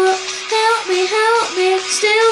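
A boy singing into a handheld microphone, holding notes and moving between them in short sung phrases.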